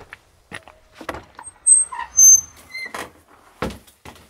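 An old wooden plank door being pushed open, giving several high-pitched squeaks in the middle, between knocks and thuds of wood.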